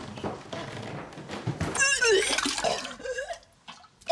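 A woman retching and vomiting into a toilet. Quick footsteps and rustling come first, then about two seconds in a loud gagging heave with liquid splashing into the bowl, and a second, shorter retch near the end.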